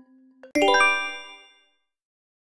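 A countdown timer's soft ticks, about two a second over a low steady tone, give way about half a second in to a loud, bright chime. The chime rings out and fades within about a second, marking the answer reveal in a quiz.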